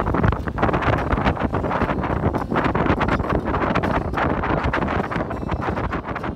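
Wind buffeting the microphone in uneven gusts over the rush of water along the hull of a Sabre 22 trailer sailer under sail.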